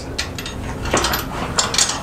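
Steel utility-trailer frame, with axle and leaf springs bolted on, being tipped over by hand: metal clanking and rattling, with a few sharper knocks about a second in and again near the end.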